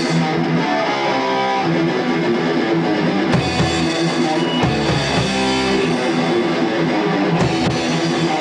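Heavy metal band playing live: distorted electric guitars and bass holding chords over a drum kit, loud and steady throughout.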